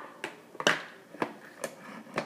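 Hard plastic clicks and knocks as a personal blender's cup is handled and lifted off its motor base. There are four short clicks, the loudest about two-thirds of a second in.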